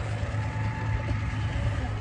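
Tractor engine running steadily with a low hum while pulling a hay rake.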